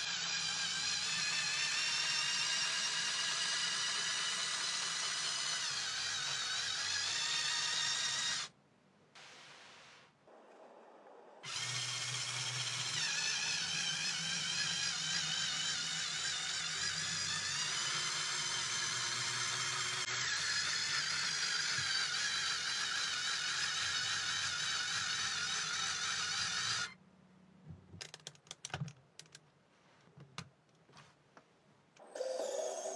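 Small LEGO electric motors and plastic gears of a toy robot vehicle whining steadily as it drives and climbs, in two long runs with a short pause between them. Near the end come a few light clicks of plastic parts being handled.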